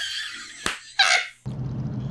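A woman laughing hard in high-pitched shrieks, with a sharp click about two-thirds of a second in and a second loud burst of laughter at about one second. The car-engine hum of the film soundtrack comes back about a second and a half in.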